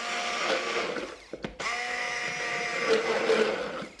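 Small electric jug blender running, puréeing ripe banana with the liquid ingredients of a brownie batter. It runs in two bursts, stopping briefly about one and a half seconds in before starting again.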